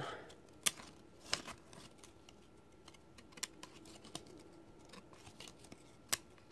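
Old trading cards that are stuck together being pulled apart and thumbed through: about five sharp paper clicks and snaps at irregular intervals, faint between them.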